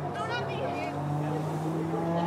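Voices calling out across the field over a steady low hum.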